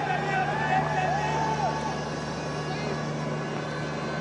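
Open ground ambience from a cricket match: a steady low hum with voices calling out and shouting over it during the first two seconds, then settling.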